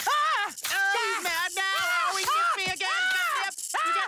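Cartoon voices crying out in pain: a rapid string of high-pitched, overlapping yelps and wails over snake bites.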